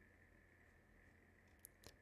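Near silence: room tone, with two faint computer mouse clicks near the end.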